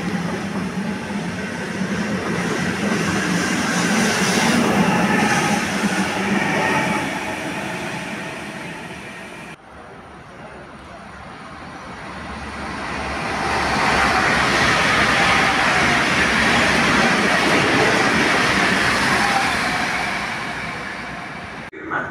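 Trenord Caravaggio double-deck electric train pulling away along the platform, its running noise fading. After a cut, a second train passing through the station on a through track: its rumble swells, holds for several seconds and dies away.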